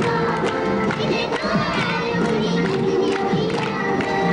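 Music with a steady beat, over which a crowd of young children's voices shouts and chants.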